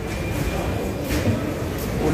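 Indoor market bustle: indistinct voices of shoppers and vendors echoing under a low concrete roof, with footsteps at an even walking pace.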